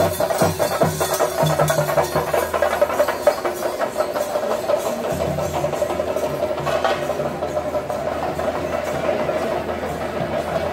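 Temple-festival percussion: drums and cymbals beaten together in a fast, steady rhythm.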